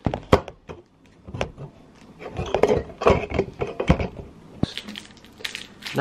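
Close handling noise: a run of small knocks and clicks as the camera is moved and set down. Near the end, the plastic wrapper of a Penguin chocolate biscuit bar crinkles as it is pulled open.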